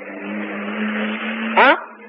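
A steady low hum with a hiss over it, swelling slightly and then fading, with a man's short 'haa' near the end.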